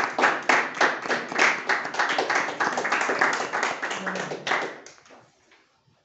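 A small group of people applauding by hand-clapping in a small room. The clapping fades out about five seconds in.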